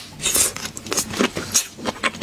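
Close-miked wet mouth sounds of someone sucking and chewing raw red prawn meat: a rapid run of sharp, sticky clicks and slurps.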